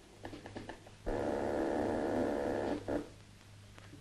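Railway dispatcher's selector call panel: small clicks as a button is pressed, then a steady raspy electric buzzer sounds for nearly two seconds and stops, the call signal to a station on the line.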